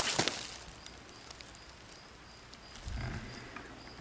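The fading end of a twig snapping: a few small splintering crackles trailing off in the first half-second. About three seconds in there is a brief low, muffled thump.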